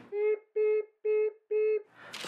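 Four short beeps at one steady, fairly low pitch, about two a second, each cutting off cleanly into silence, like a timer signalling that time is up.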